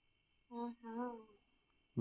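A person's voice humming twice, a short “mm-hmm” about half a second in, heard on a phone-call recording.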